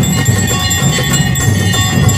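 Temple bells and jingling percussion ringing continuously for an aarti, over a dense, pulsing low rhythm.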